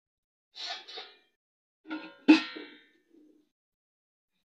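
Aluminium cooking pots and utensils knocking together. There are a couple of light clanks about half a second to a second in, then a sharper metal clang about two seconds in that rings briefly.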